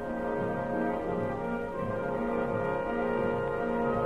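Orchestral soundtrack music led by brass, playing held chords.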